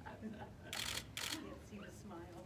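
Camera shutters clicking in two short bursts near the middle, about half a second apart, over faint voices in the background.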